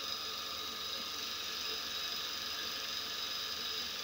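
VFD-driven bench grinder with a 2x36 belt attachment, its single-phase PSC induction motor running steadily on three-phase from the drive, with a steady whine of several high tones.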